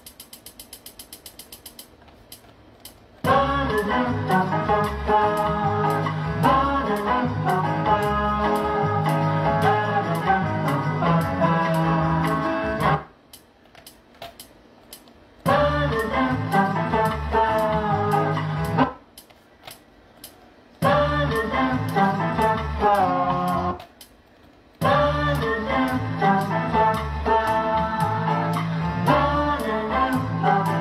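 A sampled Latin song with singing and guitar, played back in short runs: it starts about three seconds in and is stopped and restarted three times. A faint run of quick ticks comes before the first run.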